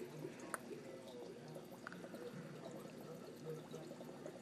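Faint trickling of water in a fish tank, with a couple of small clicks.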